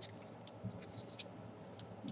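Faint rustling of origami paper as fingers tuck and press a flap of a small folded rose, with a few soft crackles.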